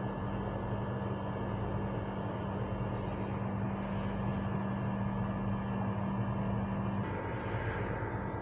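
Steady low electrical hum with hiss from the recording setup's microphone, no speech. About seven seconds in, the hum changes slightly where a paused screen recording resumes.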